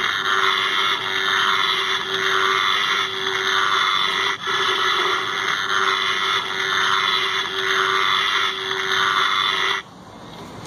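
Try-me demo sound from the small built-in speaker of a battery-operated Halloween flickering-light-bulb set: a loud, harsh electric buzz over a steady hum, wavering in level about once a second. It cuts off suddenly near the end.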